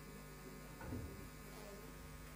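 Steady low electrical mains hum with faint room noise, and one brief muffled sound about a second in.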